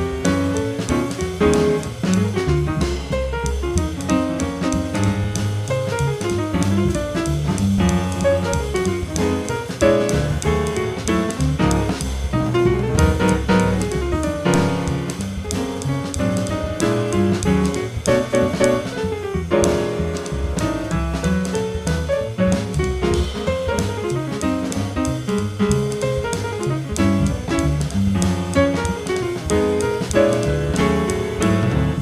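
Jazz piano trio playing live: upright piano, upright double bass, and a Yamaha drum kit with cymbals, all playing continuously with steady swing time.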